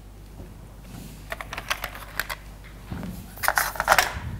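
Chalk writing on a blackboard: a run of quick sharp taps about a second and a half in, then a denser burst of tapping and scratching near the end.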